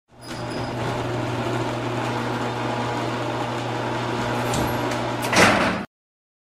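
Sound effect of a metal roll-up shutter rolling steadily along its rails with a continuous rumble, ending in a loud clank about five and a half seconds in, as it comes to a stop.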